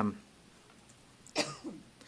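A man coughs once, short and sharp, about one and a half seconds in, then briefly clears his throat. This follows a quiet pause in the room.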